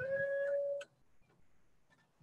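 A long, steady squeal from a casket lowering device at the graveside, rising slightly in pitch, then stopping abruptly under a second in, with a faint click.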